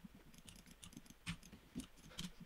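Faint, scattered clicks of a computer keyboard and mouse, a couple of them louder in the second half.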